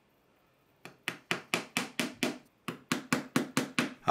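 Small hammer tapping thin nails into a plywood board: quick, light, evenly spaced blows about five a second, starting about a second in, in two runs with a short break between.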